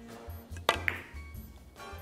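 Carom billiard balls clicking twice in quick succession about two-thirds of a second in: a cue striking the cue ball, then a ringing ball-on-ball click. Background music with a steady bass beat plays underneath.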